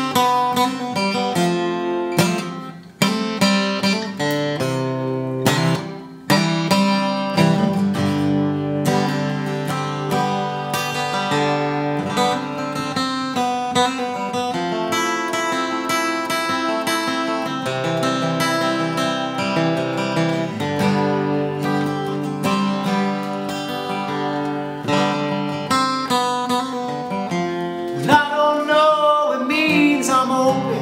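Steel-string acoustic guitar played solo, chords strummed and picked in a steady rhythm, with two brief pauses in the first several seconds. A man's singing voice comes in near the end.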